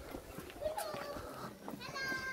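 High-pitched calls of a child in the background: a short wavering call about a second in and a higher held cry near the end.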